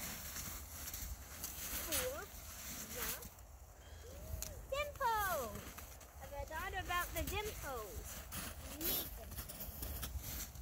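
A young girl's voice in short, soft sing-song phrases with wide swoops in pitch, too indistinct for words, coming several times, with a few faint scuffs in the snow between them.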